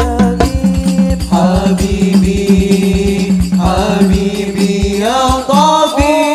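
A rebana ensemble playing: hand-struck frame drums beat a fast, steady rhythm. Sung chanting of a melody with gliding pitches comes in over the drums about a second in.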